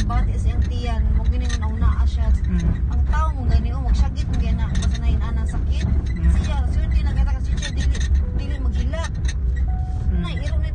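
Low, steady rumble of a car's engine and road noise heard inside the cabin while driving, with a person talking over it.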